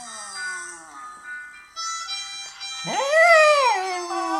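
Jack Russell terrier howling along with a recording of its own howl played from a phone's speaker: a falling howl at the start, then a louder howl that rises and falls about three seconds in.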